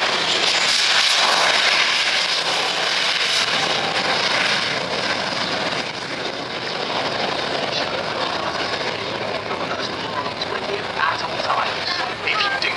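Jet aircraft engine noise, an even rush that is strongest in the first few seconds and slowly eases off, with crowd voices coming in near the end.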